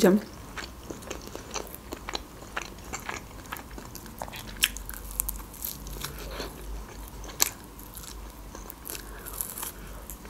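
Close-miked eating of grilled meat bitten off a skewer: irregular wet clicks and smacks of biting and chewing, with a few sharper clicks, the loudest about seven and a half seconds in.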